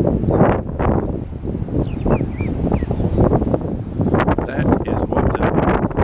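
Wind buffeting the microphone in loud, gusty rushes, with a few short bird chirps about two seconds in.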